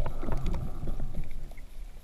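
Underwater sound picked up through a GoPro's waterproof housing while the diver swims: a low, uneven rumble of moving water with many scattered sharp clicks and crackles.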